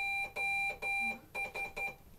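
Morse code sidetone beeping from a hand-worked straight key: three long dashes, then three short dots. These are the 'O' and final 'S' of SOS, the distress signal.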